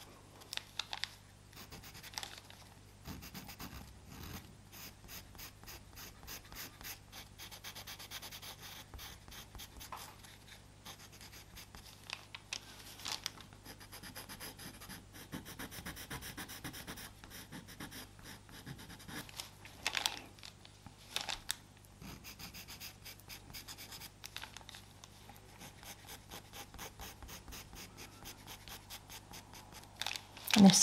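Pastel pencil scratching on Pastelmat paper in many quick, short strokes, with a few louder strokes about twenty seconds in.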